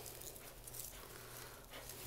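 Faint rustling of evergreen and holly foliage as hands weave a branch and paddle wire into a wreath, with a few soft scratches.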